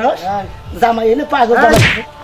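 A man's loud, shouted voice, then about 1.7 s in a single sharp whip-crack, the kind of slap sound effect added to comedy skits.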